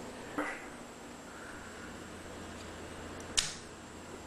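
Quiet room tone with a faint steady hum, broken by one short sharp click about three and a half seconds in.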